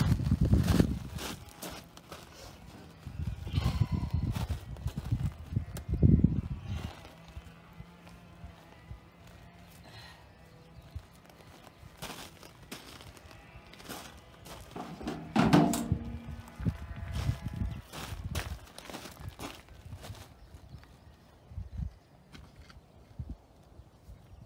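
Work boots crunching on loose gravel, in several short bursts of footsteps with quieter gaps between.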